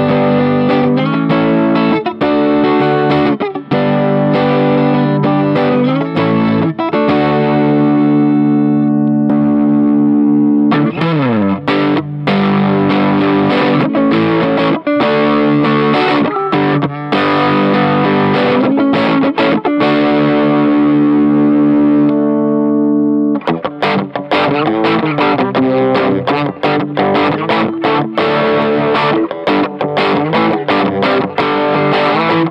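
Electric guitar played through a Marshall The Guv'nor overdrive/distortion pedal: a distorted tone, sustained chords and riffs with a downward slide about eleven seconds in. After a brief break, choppier rhythmic chords follow.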